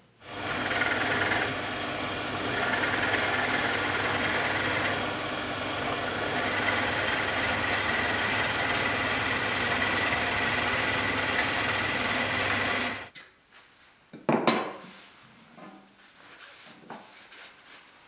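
Drill press running and boring into a round wooden stool leg clamped in a jig, a steady sound that cuts off about 13 seconds in. Shortly after, a sharp wooden knock and a few light clatters of wooden parts being handled.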